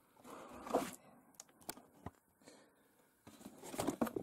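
Quiet handling of a cardboard toy box: a soft rustle, then a few light clicks and taps, and more rustling near the end as the box is picked up to be turned over.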